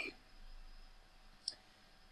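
A single short, faint computer mouse click about one and a half seconds in, against quiet room tone.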